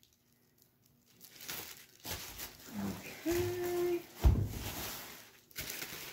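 Plastic wrapping on a stack of foam plates crinkling and rustling as it is handled, starting about a second in. A short hummed "mm" comes in the middle, followed by a single low thump, the loudest sound.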